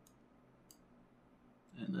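Two faint computer mouse clicks about two-thirds of a second apart over quiet room tone; a man starts speaking near the end.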